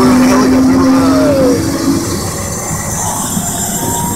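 Helicopter turbine engine running on the helipad: a steady low hum over a rumble. About halfway through the hum stops, and near the end a fainter, higher whine slowly rises.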